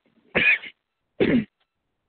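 A man clearing his throat twice over a telephone conference line, two short bursts, the second falling in pitch.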